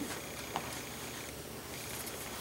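Quiet meeting-room tone: a steady low hiss, with one faint click about half a second in.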